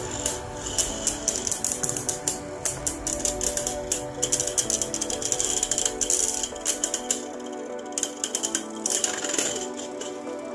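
Glide Ragnaruk and another Beyblade Burst top spinning and clashing in a plastic stadium: a rapid, irregular clatter of hard clicks over steady background music. The clicks thin out in the last few seconds as the Glide Ragnaruk top spins down and stops.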